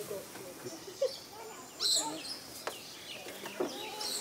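Chickens clucking with short, scattered calls, and a bird chirping sharply once about halfway through, mixed with a few soft knocks.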